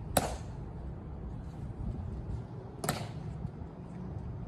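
Two sharp clicks about two and a half seconds apart from a Tomb of the Unknown Soldier sentinel's drill as he halts and turns on the mat.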